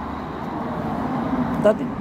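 A motor vehicle passing on the street: a steady rush of engine and tyre noise that swells a little. A man starts to speak near the end.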